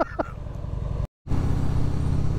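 2001 Harley-Davidson Heritage Softail's V-twin engine running under way with wind noise. The sound cuts out completely for a moment just past a second in, then the engine and wind come back a little louder.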